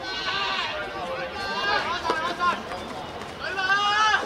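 Several young voices shouting and calling out across a football pitch in short, high, overlapping bursts.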